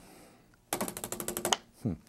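A small round paintbrush beaten rapidly to shake the paint thinner out of it after washing: a fast, even rattle of sharp taps, about fifteen a second, lasting just under a second.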